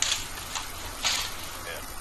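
Faint, indistinct voices over steady outdoor background noise, with two short bursts of hiss about a second apart.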